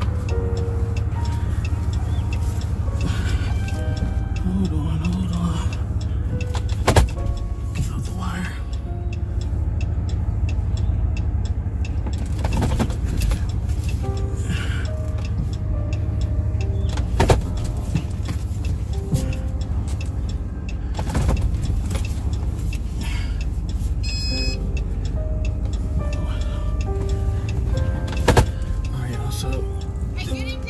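Low, steady engine and road rumble inside a moving car's cabin, with music and indistinct voices under it. Three sharp clicks come about ten seconds apart.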